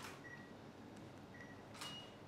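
Near silence: faint room tone, with one soft sharp click near the end and a couple of very faint brief high beeps.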